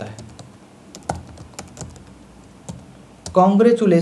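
Computer keyboard being typed on: a run of irregular, fairly faint key clicks as a word is typed out. A man starts speaking near the end.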